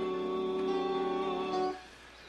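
Male vocal group holding a sustained close-harmony chord over acoustic guitar and upright bass. The chord cuts off near the end, leaving a brief hush.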